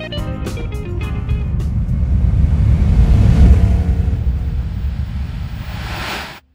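Guitar music fades out in the first second or two. It gives way to the low rumble of the 1973 Volkswagen Super Beetle's air-cooled 1641 cc flat-four engine, which swells to its loudest about halfway through and then eases off, with a rising hiss near the end.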